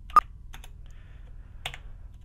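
Computer keyboard keys being typed: one sharp, loud key click about a fifth of a second in, then a few fainter, scattered key clicks.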